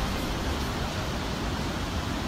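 Heavy ocean surf, with large waves breaking in a steady rushing noise.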